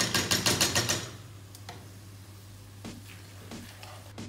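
Wooden spoon clacking rapidly against a cooking pot, about ten quick knocks in the first second, then a few faint knocks. A steady low hum runs underneath.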